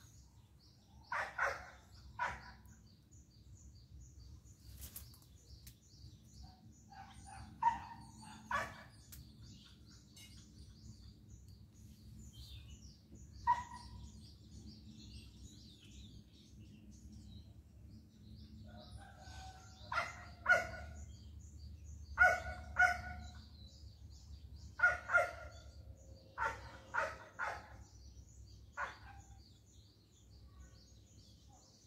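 Short animal calls, often in pairs or threes, more frequent in the second half, over a steady high chirping of small birds.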